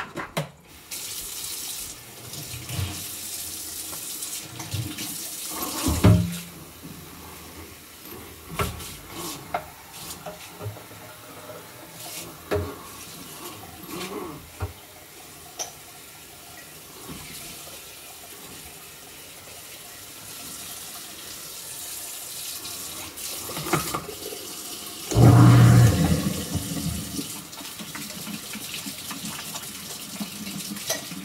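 Kitchen faucet running into a sink during hand dishwashing, with scattered clinks of dishes. Near the end comes a loud, low thud lasting under a second.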